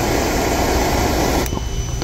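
Steady rushing, blowing noise from a workshop tool that stops abruptly about one and a half seconds in, leaving a faint low hum.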